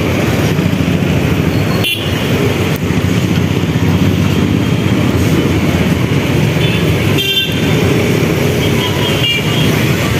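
Busy street traffic: a steady rumble of passing vehicles, with a few short horn toots, about two seconds in and again around seven and nine seconds.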